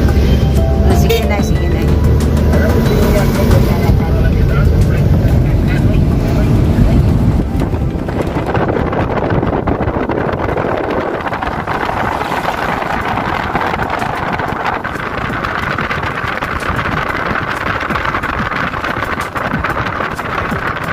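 Vehicle cabin noise while driving on a highway: a steady low engine and road rumble for the first several seconds, then, from about eight seconds in, a steadier rushing hiss of wind and tyre noise.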